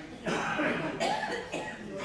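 A person coughing, two sudden coughs close together, with some voice mixed in.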